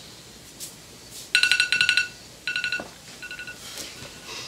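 Electronic ringtone-style trill: rapid pulsed beeps on a few fixed pitches, coming in three bursts, each shorter than the last and the final one fainter.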